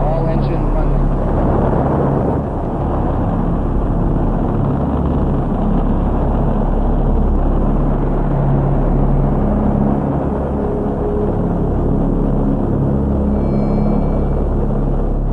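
Saturn V rocket's five F-1 first-stage engines at liftoff: a loud, steady, deep rumble of rocket exhaust that holds at the same level throughout.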